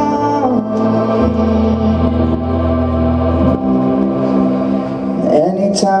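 Live rock band playing an instrumental stretch between sung lines: held electric keyboard chords over bass guitar notes that change about a second in and again past three seconds. A sung note glides in near the end.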